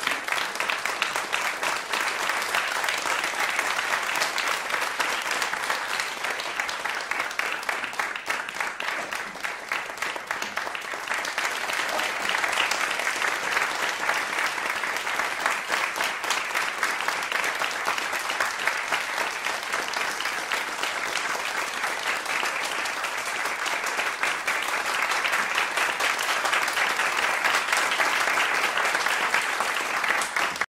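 Sustained audience applause, a dense patter of many hands clapping that eases slightly about ten seconds in and builds again toward the end.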